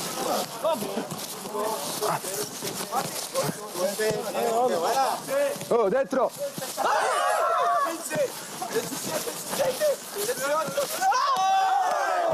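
Footballers shouting, whooping and laughing during a training drill, with scattered sharp ball kicks.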